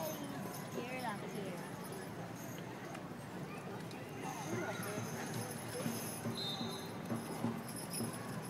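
Outdoor spectator ambience: a general murmur of distant voices with a low steady hum beneath it.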